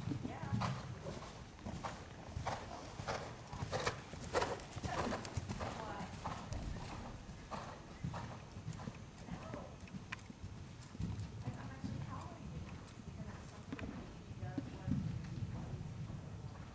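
Hoofbeats of a ridden horse moving around an indoor arena on sand footing: a run of soft, irregular knocks, thickest in the first five seconds.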